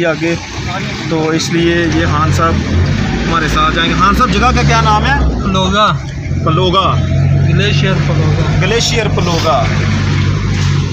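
Voices talking inside a moving passenger van's cabin, over the steady low hum of its engine and road noise.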